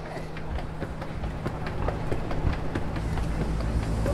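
A train running on rails, with a dense, irregular rattle and clicking over a steady low hum, growing louder.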